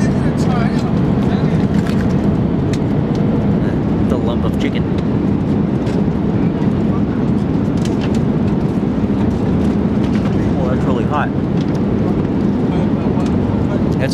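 Steady low roar of a jet airliner's cabin in cruise flight, with a faint constant hum. Occasional light clicks of plastic cutlery on a meal tray sound over it.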